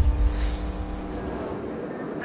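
Broadcast graphic-transition sound effect: a deep boom at the start that rumbles on for about a second and a half under a steady held tone.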